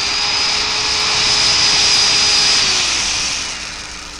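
Small electric motor whirring: it spins up, runs steadily for about three seconds, then winds down near the end.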